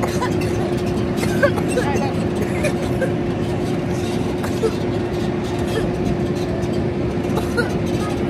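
Tractor pulling a hay wagon: a steady engine and ride noise with a constant hum, and the passengers chattering.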